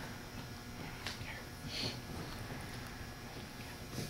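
Faint background chatter in a large room, with a light knock about a second in and a brief hiss shortly after.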